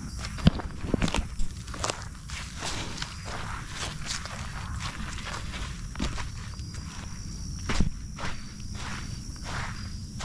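Footsteps crunching on sand and dry leaf litter at an irregular walking pace, with a few louder knocks about half a second in, around a second in and near eight seconds, over a steady low rumble.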